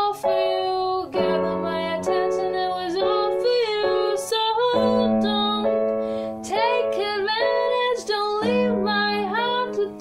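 A woman singing over an electronic keyboard playing held chords, the chords changing about a second in, just before five seconds, and near the end.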